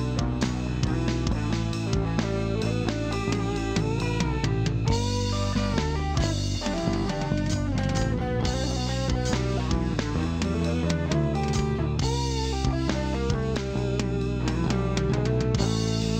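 Electric guitar lead from a Stratocaster-style guitar, played with bent, gliding notes over a backing of drums and bass, in an instrumental break without vocals.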